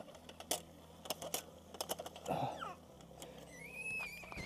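Scattered sharp metallic clicks and clinks as a stainless steel camp kettle is lifted off campfire coals by its wire handle. A short thin tone rises and then holds near the end.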